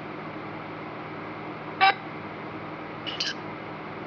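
Necrophonic ghost-box app on a tablet playing a steady white-noise hiss, broken by short clipped sound fragments from its sound bank: one just under two seconds in and a quick pair a little after three seconds.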